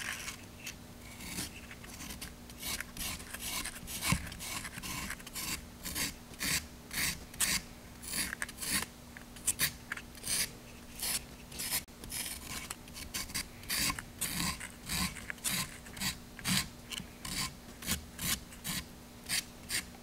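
Medium-grit sandpaper rubbed by hand over the tip of a wooden dowel, rounding over its edges: a run of short scratchy strokes, about two to three a second.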